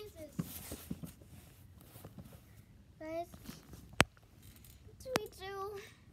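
A child's voice making two short wordless sounds, one about three seconds in and one near the end, with two sharp clicks in the quiet between them.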